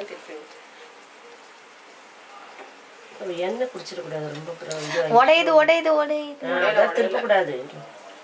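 Bread pieces deep-frying in a pan of oil, a faint steady sizzle. About three seconds in, a voice starts talking over it and stays the loudest sound until near the end.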